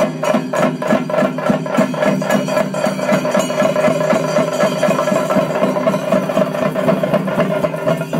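Chenda drums beaten with sticks in a fast, steady rhythm, about four strokes a second at first and then thickening into a denser roll, over a sustained steady drone.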